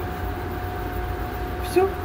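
Steady electric hum with a constant mid-pitched whine from a countertop electric cooking plate, just switched on and heating a large pot of milk.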